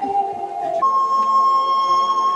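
Slow instrumental music: a melody instrument slides down on one note, then holds a new, higher long steady note from about a second in.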